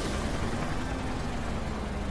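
Cartoon sound effect of a twin-rotor helicopter's rotors and engine, a steady low drone as it flies off.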